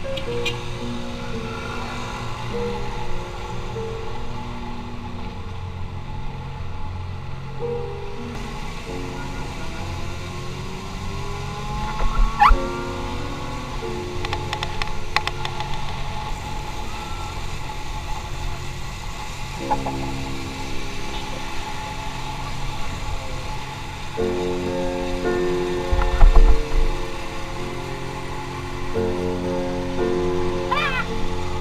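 Background music with held notes that change in steps like a chord progression, rising to two louder bursts partway through, over a low steady rumble.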